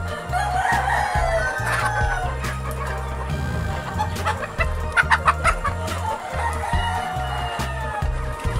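Chickens clucking and a rooster crowing, over background music with a steady bass line. There is a crowing call about half a second in and a quick run of sharp clucks around the middle.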